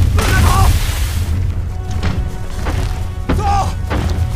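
Film soundtrack of dramatic score over a heavy low rumble, with sharp thuds at the start and near the end. A brief shouted "Let's go" comes near the end.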